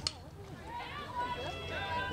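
Faint voices of players calling and chanting across an outdoor softball field, some held and sing-song, over a low ambient hum, with a brief sharp click at the very start.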